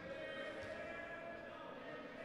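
Faint sounds of a handball match on an indoor court: a handball bouncing on the court floor with a couple of soft thuds, over the low background of the hall.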